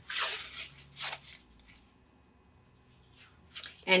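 Freezer paper, ironed onto fabric, being ripped away along a sewn stitch line: a short tearing burst, then a second brief rip about a second in.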